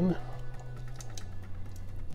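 Faint light clicks and taps of a Hot Wheels die-cast toy car being turned over in the fingers, over a low steady hum.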